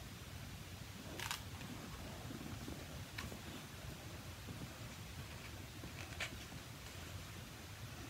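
Handling of a hardcover picture book as its pages are turned: a brief paper rustle about a second in and a couple of fainter taps later, over low steady room noise.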